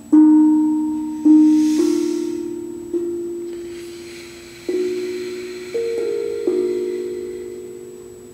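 Steel tongue drum played slowly, one note at a time: seven struck notes in a gentle, unhurried melody, each ringing on and fading before the next.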